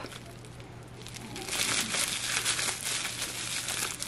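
Plastic bubble wrap scrunched in a hand, crinkling and crackling in a dense run of small crackles that starts about a second and a half in.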